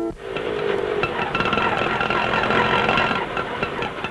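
Auto-rickshaw engine running as the three-wheeler drives up, under film background music.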